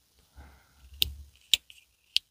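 Slipjoint folding knife being opened and closed by hand: sharp clicks about a second in and again half a second later as the blade snaps into place on its backspring, with soft rubbing of fingers on the handle.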